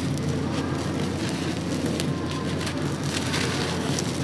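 Balls of dry, gritty cement crumbling in the hands, with a steady stream of grains and small crumbs falling onto a floor of loose cement powder.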